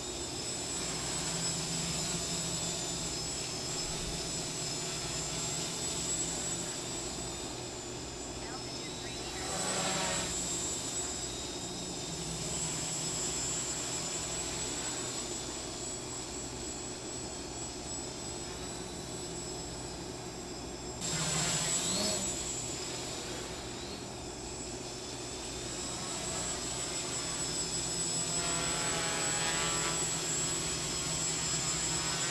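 X525 quadcopter's electric motors and carbon fibre propellers running steadily in flight, a buzzing drone with a high whine. It swells louder briefly about ten seconds in and again a little after twenty seconds, then rises again near the end.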